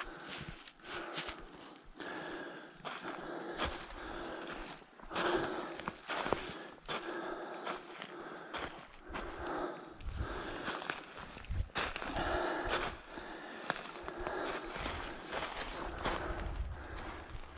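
Footsteps crunching and rustling through dry fallen leaves on a steep slope, with the walker's hard breathing about once a second.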